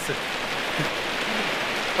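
Heavy rain pouring down in a steady, even hiss.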